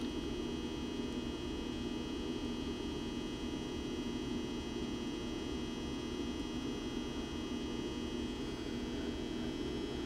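Steady background hum and hiss with no distinct events: room tone carrying an electrical hum.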